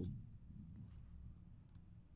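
A few faint computer mouse clicks, about a second in and again near the end, while a line of code is selected in a text editor.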